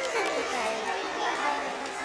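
Speech only: a salesman talking at a shop counter, over the chatter of a busy shop floor.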